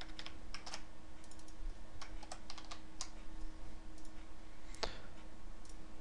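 Typing on a computer keyboard: irregular key clicks, a few at a time, over a faint steady hum.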